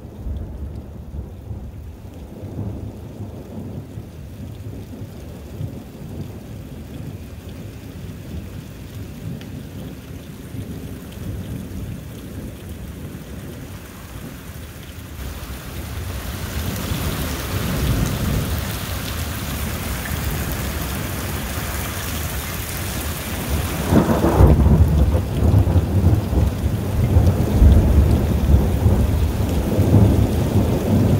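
Thunderstorm: rain falling with thunder rumbling low. About halfway the rain hiss grows much louder, and a loud, long roll of thunder comes in near the end.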